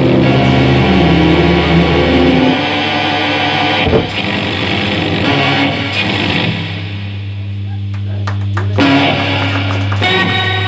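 Live rock band with electric guitars, bass and drums playing loudly. The dense sustained chords thin out after a couple of seconds, leaving a lower, quieter held bass drone with scattered guitar noises and a sharp hit about four seconds in.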